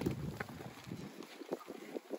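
Faint wind noise on the microphone, with a few soft ticks from the hooves of a flock of Dorper sheep moving over dry dirt.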